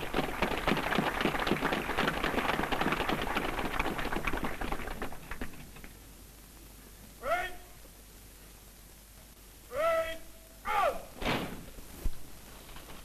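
Audience applauding for about five seconds, the clapping dying away. Later, a man's voice calls out three times in long, drawn-out shouts.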